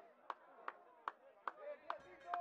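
A series of sharp taps or knocks, about two to three a second, over faint distant shouting.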